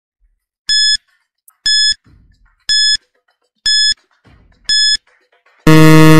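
Quiz countdown timer sound effect: five short, high electronic beeps about once a second, then a loud, lower buzzer near the end signalling that the five seconds are up.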